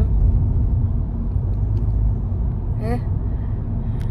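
Steady low rumble of a car heard from inside the cabin, a little stronger in the first two seconds.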